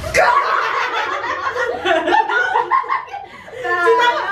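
Two women laughing and cheering loudly, right after a short song clip cuts off. The noise eases briefly about three seconds in, then picks up again.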